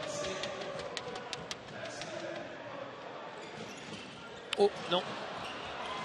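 Basketball arena crowd noise, with several sharp knocks of a basketball bouncing on the court in the first second and a half.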